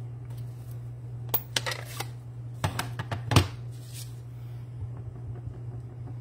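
Plastic clicks and knocks as an ink pad case is opened and a clear stamp on an acrylic block is handled on a wooden tabletop, the loudest knock about three and a half seconds in. A low steady hum runs underneath.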